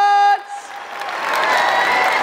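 A man's long, held shout of "whaaat" cuts off just after the start, and a theatre audience applauds and cheers through the rest.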